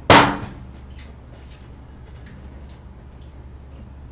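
One loud, sudden clatter right at the start that dies away within about half a second, then a low steady hum of room tone with a few faint, scattered clicks.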